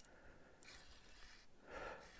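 Near silence, with a faint breath near the end.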